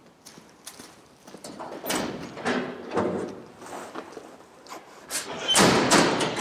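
Footsteps scuffing and crunching across a dirt and wood-chip shed floor, coming closer, with a louder clatter or knock shortly before the end.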